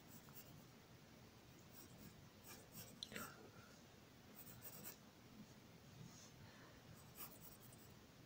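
Near silence with the faint scratch of a pencil drawing strokes on paper, coming in a few short runs.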